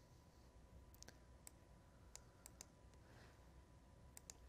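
Near silence with about six faint computer mouse clicks between one and three seconds in, as reports are selected in the software.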